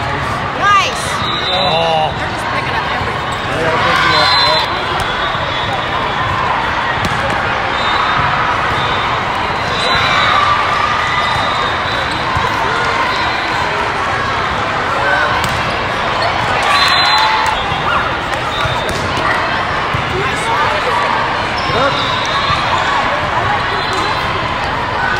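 Busy indoor volleyball tournament hall: a steady din of many voices, echoing in the large space, with the knocks of volleyballs being hit and bouncing on the courts.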